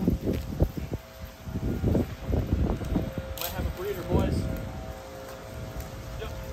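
Leaves and branches rustling and scuffling in irregular bursts as a green iguana caught in a snare-pole noose is hauled out of a shrub.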